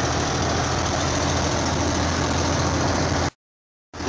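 Steady in-cab engine and road drone of a truck rolling down a long grade at about 50 mph. It cuts off abruptly to silence for about half a second near the end.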